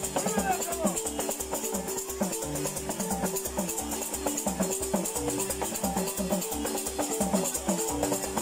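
Balafons, wooden xylophones with gourd resonators, playing a fast repeating melody of short struck notes over a steady low beat, with a shaker rattling along in time.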